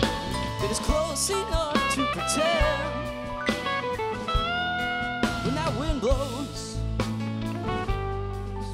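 Live rock band playing an instrumental passage: an electric lead guitar plays bending, vibrato-laden lines over electric bass and a drum kit.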